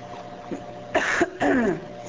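A woman clearing her throat: two short, rough bursts about a second in.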